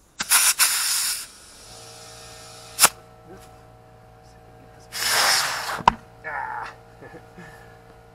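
Compressed air from a shop air hose hissing in two loud blasts, about a second each, near the start and about five seconds in, as the chuck comes off and is worked at the tire's valve, with sharp clicks in between. A faint steady hum runs underneath from about two seconds in.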